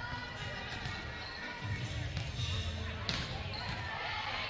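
Volleyballs being struck and bouncing on a hardwood gym floor during warm-ups: several sharp smacks, the loudest about three seconds in, over players' chatter.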